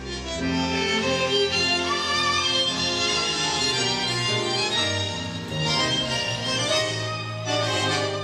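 Argentine tango music playing steadily, a bandoneon and violins carrying the melody over a bass line.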